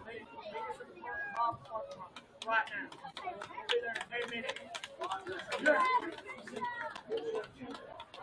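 Indistinct voices of people talking nearby, as in spectators chatting, with scattered sharp clicks through the middle of the stretch.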